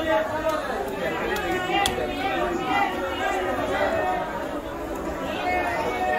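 Chatter of several people talking over one another in a busy market, with a couple of brief sharp clicks between one and two seconds in.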